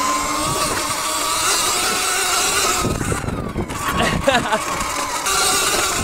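Segway X160 electric dirt bike's motor whining under acceleration, its pitch rising a little as it speeds up, with tyre and wind noise around it. It is running in its highest torque mode, pulling up a grassy hill.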